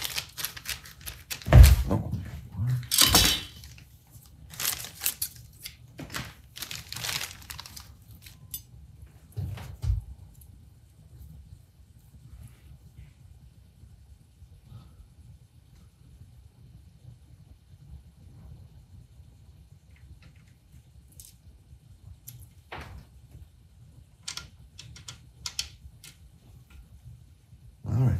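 A plastic parts bag crinkling and being torn open, with a few knocks, over the first several seconds. Later, near the end, scattered small clicks of a screwdriver and parts as the KitchenAid mixer's speed control plate is swapped.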